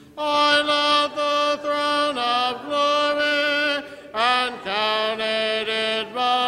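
Church congregation singing a hymn a cappella in parts, slow held notes with short breaks between phrases.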